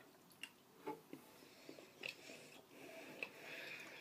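Faint chewing of a piece of Hershey's chocolate: a few soft mouth clicks and smacks spread out over the seconds.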